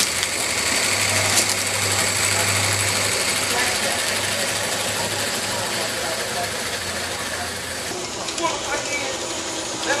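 Large-scale garden railway train running along the track: a steady mechanical clatter with a hiss, easing off a little in the last couple of seconds.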